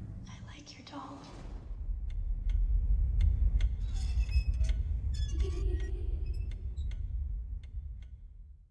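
Horror-film sound design: a low rumbling drone under faint whispering, then from about two seconds in a scatter of sharp, irregular clicks and short tinkling rings that fade out near the end.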